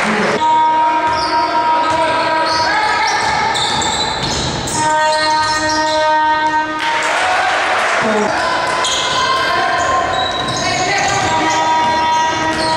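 A basketball bouncing on a hardwood court during play, in a large reverberant gym, with held steady tones and voices in the background.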